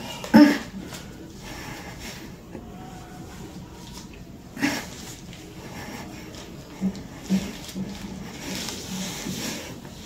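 A woman in the pushing stage of labour breathing hard and straining. There is a short loud vocal burst about half a second in, a smaller one about halfway, and a long breathy breath near the end.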